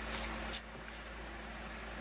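Hands handling the cardboard and plastic parts of a craft-kit projector: a faint rustle, then a single sharp click about half a second in, over a steady low room hum.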